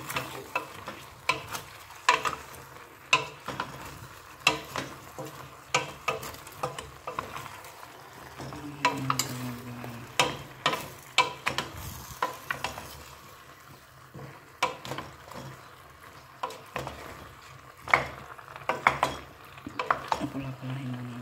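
A wooden spoon stirs chunks of taro and pork in a stainless steel pot, knocking and scraping against the pot at irregular moments, about one or two a second. Under it the meat sizzles in the pot.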